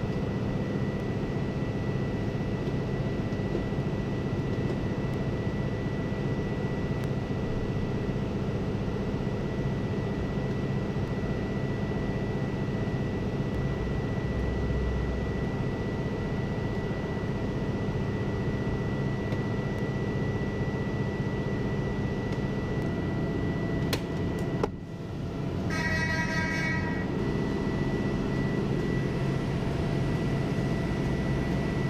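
Steady drone of industrial machinery, with a constant high-pitched whine over a low hum. Near the end the drone breaks off for a moment and a short high beep sounds for about a second and a half, then the drone resumes.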